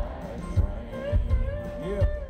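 Live country band performance heard from the audience: a steady low drum beat under acoustic guitar and a held, bending melodic line.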